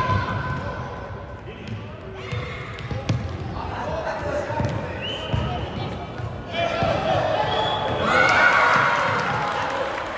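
Futsal ball being kicked and bouncing on a wooden sports-hall floor, with players' and coaches' voices calling out across the echoing hall, the voices loudest in the last few seconds.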